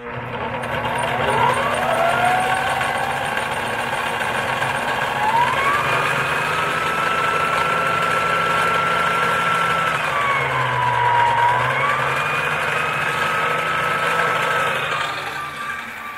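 Electric fishing-line spooling machine running, winding braided line onto a spinning reel's spool. Its motor whine rises in pitch as it speeds up, dips briefly about ten seconds in, then climbs back.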